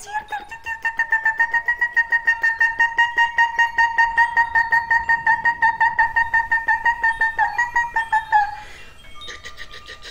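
A woman's voice chanting light language: one syllable repeated rapidly, about six times a second, on a single high held pitch for about eight seconds, then stopping.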